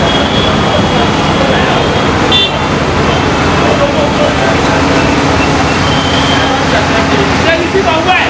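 Busy city street noise: vehicle engines and traffic mixed with people's voices. A steady low drone sets in about halfway through.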